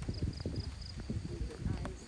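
Low voices of onlookers talking in the background, mixed with irregular soft knocks, and four short high chirps at one pitch in the first second.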